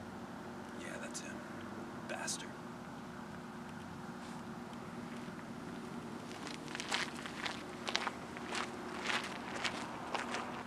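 Footsteps on pavement, a quick run of sharp steps starting about six and a half seconds in, over a steady electrical hum.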